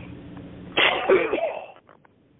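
A person coughing once, loudly and briefly, heard through a narrow-band conference phone line. The steady low hum on the line drops out just after.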